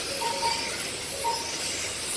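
1/10-scale RC touring cars running on the track: faint high-pitched motor whines that rise and fall as the cars accelerate and slow, over a steady hiss.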